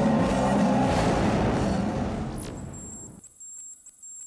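Background rock music fading out over the last two seconds, with a falling swoosh about two and a half seconds in and a faint, high shimmering sound effect after it.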